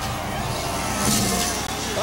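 Dirt bike engine running and revving as the freestyle motocross rider heads up the run-in to a big jump, with a surge about a second in.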